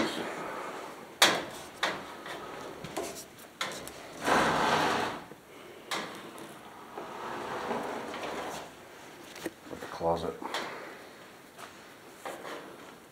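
Scattered knocks and clatters, with one longer scrape of about a second starting near four seconds in. A voice murmurs briefly near the end.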